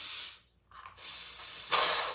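A person sniffing in through the nose while using a Flonase nasal spray, drawing the spray up. Two long, hissing sniffs, then a louder, shorter breath near the end.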